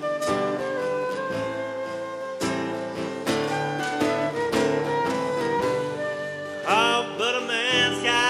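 Live acoustic band playing an instrumental passage: a flute melody over acoustic guitar, double bass and drums. About seven seconds in, a louder melody line with strong vibrato comes in.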